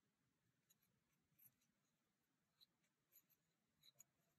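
Near silence, with a handful of faint small ticks and rustles from a metal crochet hook pulling cotton thread through stitches.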